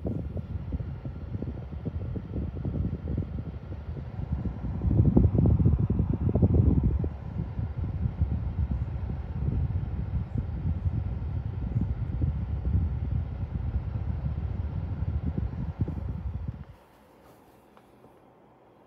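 Winix PlasmaWave air purifier's fan blowing, its outlet air stream buffeting the microphone held at the grille as an uneven low rumble. The rumble swells about five seconds in and cuts off sharply near the end.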